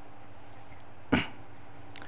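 Quiet studio room tone, broken once about a second in by a single short, sharp vocal sound from a person.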